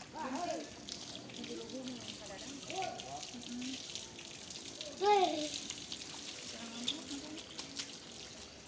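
Spring water running steadily into a pool, a soft even rush of water.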